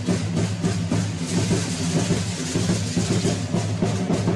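Tambora drum beating a fast, steady rhythm for a matachines dance, with a rattling hiss from the dancers' bows and costumes that swells through the middle.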